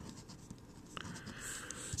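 Faint scratching of a pencil writing on paper, with a light tick about a second in.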